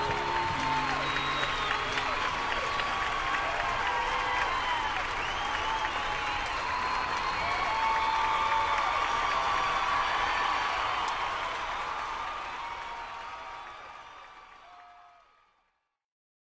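Audience applauding and cheering, with scattered whoops, after an acoustic country set. The applause fades out over the last few seconds.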